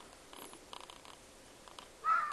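Faint, low grunting of chacma baboons, with a few soft scuffs and rustles. The grunts are typical of troop members concerned at being split from the rest of the group.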